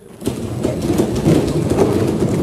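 Members of parliament thumping their desks in approval: a dense, continuous patter of many knocks that starts a moment in.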